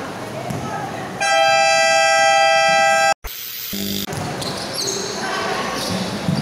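A loud, steady horn blast lasting about two seconds that cuts off suddenly, followed about half a second later by a brief, lower horn tone.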